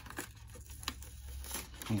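A sheet of white paper rustling and crinkling as it is unfolded and handled, with a couple of light ticks.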